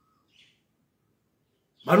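Near silence with one faint, short bird chirp near the start; a man's voice starts just before the end.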